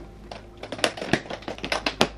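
A quick, irregular run of clicks and clacks as a section of an aluminium-framed rolling cosmetology case is fitted back onto the stack and its metal latches fastened.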